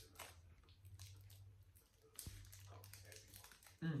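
Faint crinkling and clicking of a clear plastic candy wrapper as a Laffy Taffy Rope is handled, with a soft thump about halfway and a low steady hum underneath.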